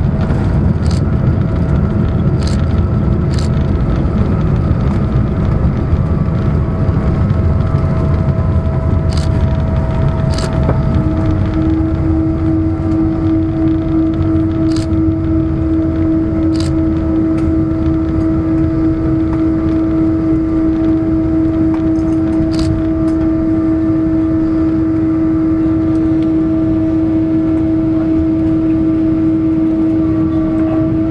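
Cabin noise of a Boeing 777-200 airliner decelerating on the runway after touchdown: a loud, steady low rumble from the wheels and engines, with a faint falling whine in the first ten seconds and a few sharp clicks and rattles. About eleven seconds in, a steady humming tone comes in and holds.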